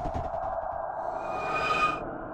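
Eerie electronic drone of a documentary's suspense score, a steady hum with high ringing tones swelling in about halfway through.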